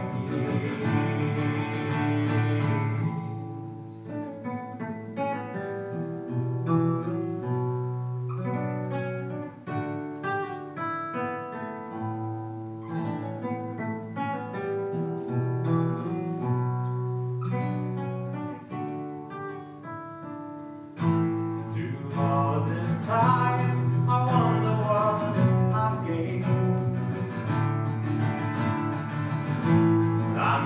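Fingerpicked acoustic guitar playing a slow song, with a man singing near the start. After a picked instrumental stretch, his voice comes back in, louder, about two-thirds of the way through.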